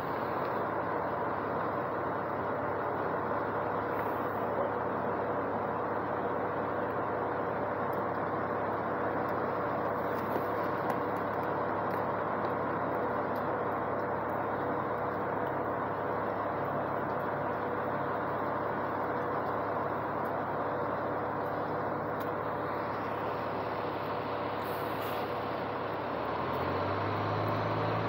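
A New Flyer D40i low-floor city bus's diesel engine idling with a steady hum. Near the end a deeper engine note comes in and the sound grows a little louder.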